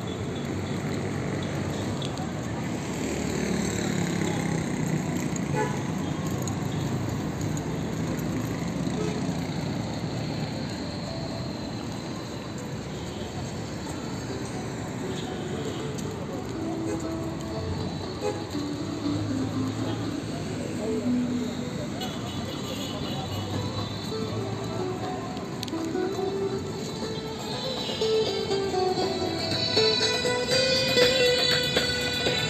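Busy street ambience: passers-by's voices and passing traffic mixed with music, and an acoustic guitar played by a street busker growing louder near the end.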